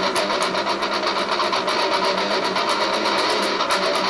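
Electric guitar played through a BOSS MT-2 Metal Zone distortion pedal into a Vox AC15 valve amp: heavily distorted tone with rapid picked notes, several strokes a second.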